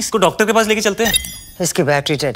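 Film dialogue: voices speaking, with a brief high ringing sound of several thin steady tones about a second in.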